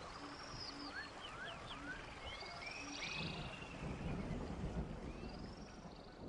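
Faint chirping calls, short notes gliding up and down, over a steady hiss. A low rumble swells up in the second half.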